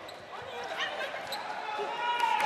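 Indoor basketball arena during a stoppage in play: steady crowd and hall murmur with a few short, sharp high sounds from the court.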